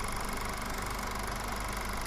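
A steady, even droning hum that holds the same level throughout.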